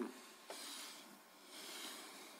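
Faint room tone with a light click about half a second in, followed by a soft rustle.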